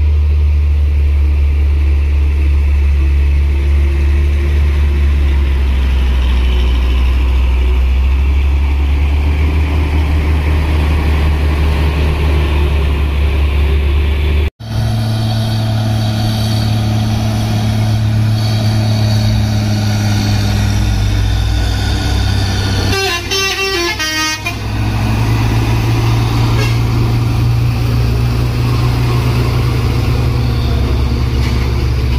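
Heavy diesel trucks pulling up a hill close by, their engines droning low and steady under load. The sound cuts sharply about halfway, and a container truck's engine follows. About two-thirds of the way in, a horn toots in a quick string of pulses for a second or two.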